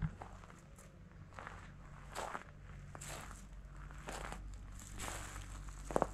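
Footsteps on dry grass and dirt, at an unhurried walking pace of roughly one step a second, with a short sharp knock at the start and another at the end.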